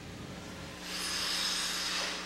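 Figure skate blades hissing across the ice, a smooth rush that swells about two-thirds of a second in and dies away as the skater glides to a stop.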